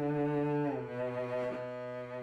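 Cello bowed in long sustained notes: a held note slides down to a lower note just under a second in, and the lower note is held.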